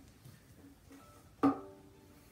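A violin being set down: a single knock about a second and a half in, with its open strings briefly ringing on after it.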